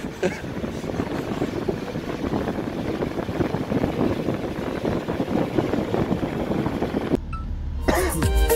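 Steady road and engine rumble of a moving vehicle heard from inside, with wind noise, cutting off abruptly about seven seconds in.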